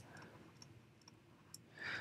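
Near silence: room tone with a few faint clicks, and a short breath just before speech resumes near the end.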